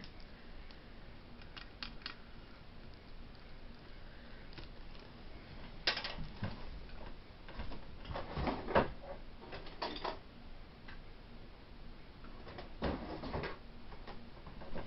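Handling noise: scattered light clicks and knocks, with a few louder knocks about six, eight to nine, ten and thirteen seconds in, over a quiet room background.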